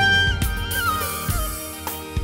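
Kurdish wedding band music: a single ornamented instrumental melody stepping downward over a steady bass, getting quieter toward the end.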